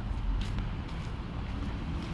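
Low, steady rumble of road traffic and car engines.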